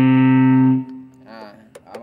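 Electric guitar, a Plato Stratocaster-style solid-body played through an amplifier with a distorted tone: a held chord rings steadily, then is damped and cut off abruptly less than a second in.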